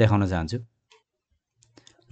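A man speaking Nepali for the first moment, then a pause with a few faint clicks.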